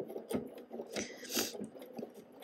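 Bernina 770 computerized sewing machine stitching slowly across the end of a metal-toothed zipper through faux leather, with uneven short knocks over a low running noise.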